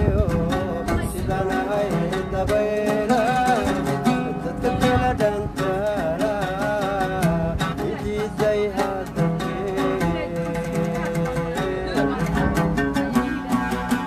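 An oud plucked in quick, busy notes, with a voice singing a wavering melody over it.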